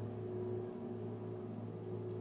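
A low, steady held note: a drone in the music, sustained as the chord before it fades away.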